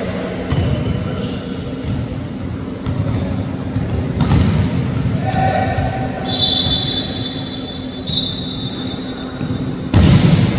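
Indoor volleyball play: a ball thud about four seconds in and a sharp, loud hit of the volleyball right at the end, over a steady hum and players' voices.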